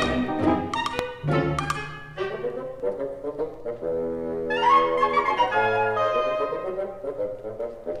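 Orchestral film-score music led by brass, with sharp percussive hits in the first two seconds, then held brass chords that swell upward about halfway through.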